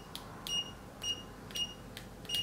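Brymen TBM251 digital multimeter's continuity beeper giving three short, high-pitched beeps about half a second apart as the test probe tips are tapped together, with a light click of the metal tips at each touch. The beeper is latching, so each brief contact gives a full short beep.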